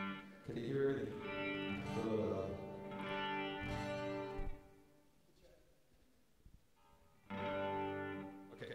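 Fender electric guitar and acoustic guitar playing ringing chords together. There are two sustained passages with about three seconds of near quiet between them.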